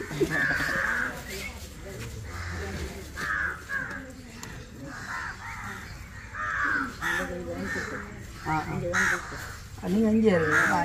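Crows cawing again and again, roughly once a second, with people talking in the background.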